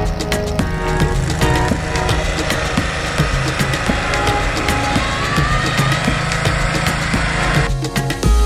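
Snow blower engine running steadily while throwing snow, mixed under background music; it stops abruptly near the end.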